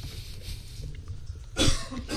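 One short cough from a person at a microphone, about a second and a half in, over faint room noise.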